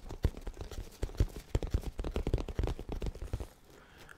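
Fingers rubbing and tapping a black fabric cover held tight over a microphone, very close: a quick, irregular run of dull thumps and scratchy rustles that stops about three and a half seconds in.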